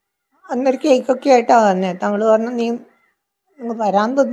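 A woman speaking in two stretches with a pause between them, her voice drawn out and sliding in pitch.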